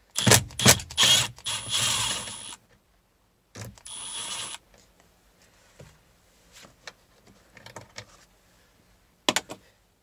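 Cordless driver spinning out the bolt that holds the key port in the dash: one run of about two and a half seconds, then a shorter burst about three and a half seconds in. Light clicks of handling follow, with a sharp click near the end.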